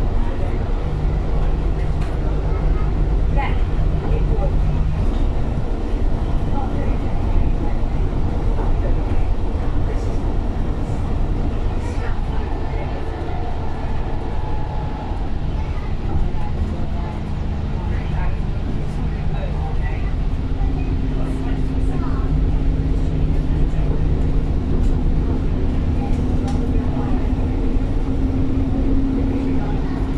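Bus engine and driveline running under way, heard from inside the passenger saloon: a steady low drone with a whine that rises slightly in pitch over the second half. Light rattles and clicks come from the interior fittings throughout.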